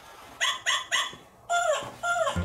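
Electronic plush toy dog yapping: a run of short, high yips in quick succession.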